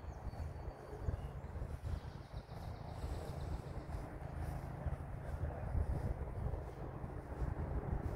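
Low, uneven outdoor rumble: wind buffeting the microphone.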